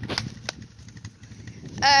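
A quad's (ATV's) engine running at idle, a low steady rumble, with two sharp clicks in the first half-second. A short spoken 'uh' comes near the end.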